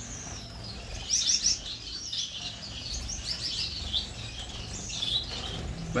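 A caged flock of Gouldian finches chirping, many short high calls overlapping, with a louder flurry about a second in.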